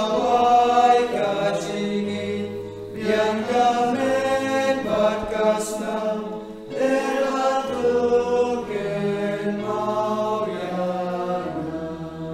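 A hymn sung by voices over sustained held chords, in phrases of a few seconds with short breaks about three and six and a half seconds in.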